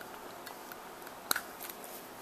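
Box-cutter blade cutting through thin plastic tubing from a Bic pen: a few faint ticks and one sharper click a little past halfway.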